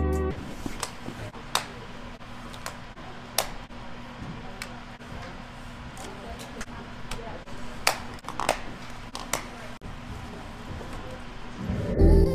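Room ambience with a steady low hum and faint background voices, broken by scattered sharp clicks and knocks as a ski boot is handled and pulled on.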